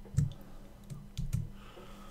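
About four clicks of computer keys being pressed, the first one loudest, with a faint steady hum underneath.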